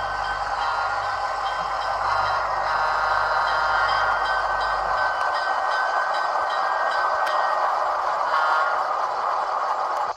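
HO-scale Rapido ALCO PA diesel model running along the track, pulling freight cars: a steady running noise with a thin high whine. A low hum drops out about halfway through.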